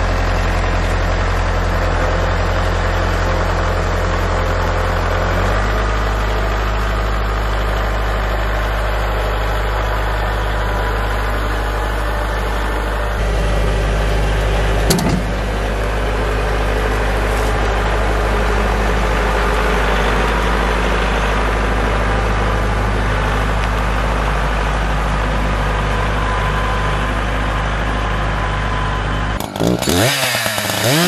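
Kubota L4701 tractor's four-cylinder diesel engine running steadily while dragging a large oak log on a chain; its note changes about five and again about thirteen seconds in. A single sharp knock sounds about fifteen seconds in.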